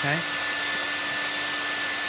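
Panasonic EH-NA45 hair dryer running steadily: a rush of blown air over an even motor whine.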